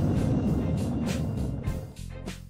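A low, steady vehicle rumble under documentary background music, fading toward the end.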